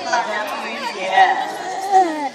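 Speech: several people talking.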